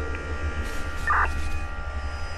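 Steady low hum with a few faint held tones above it, and a brief blip about a second in.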